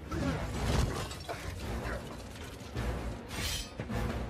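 Superhero-film battle sound mix: crashing and metallic clanking from the fight, with a loud rushing burst near the end, over the film's score.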